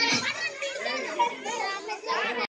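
Several children's voices talking and calling over one another.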